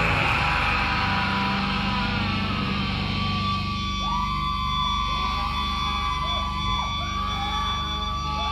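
Electric guitar amplifiers left ringing between songs: a steady low hum and a held high feedback tone. From about four seconds in, wavering, siren-like pitch glides join them.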